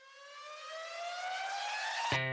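A single synthetic tone that rises steadily in pitch, about an octave over two seconds, and grows louder as it climbs, like a siren winding up. It is an edited-in riser effect bridging into music.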